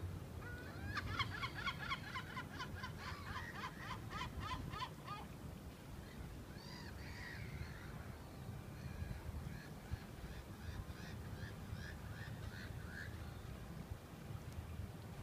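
A gull calling: a quick run of a dozen or so calls, about three a second, then after a pause a second, fainter run of calls. Beneath them is a low steady rumble.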